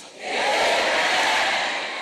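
A congregation's many voices crying out in prayer at once: a loud, even roar of voices in which no single speaker stands out. It swells in within the first half second and eases slightly near the end.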